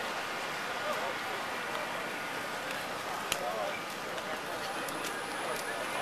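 Aptera 2e electric three-wheeler rolling slowly past, making little more than a soft steady road noise under the crowd's low background chatter. A faint high whine comes in during the last second and a half.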